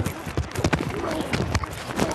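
Rapid, irregular thuds and clatter of football pads and helmets colliding and cleats pounding the turf during a pass rush, heard close on a defensive lineman's body mic.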